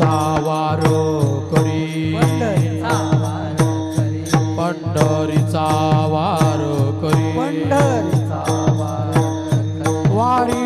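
Devotional chant sung by a lead voice over a steady drone. Brass hand cymbals (taal) clash in a steady beat, and a drum's bass strokes slide down in pitch about three times a second.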